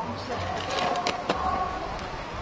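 Drill squad on tarmac turning and stepping off, with two sharp knocks a little after a second in, over faint background voices and music.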